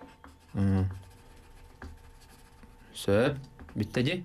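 Pencil scratching on paper, faint and irregular, with two short vocal sounds, one about half a second in and one about three seconds in.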